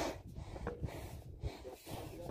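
A person breathing hard from climbing a steep tower staircase: one loud breath at the start, then quieter, irregular breaths.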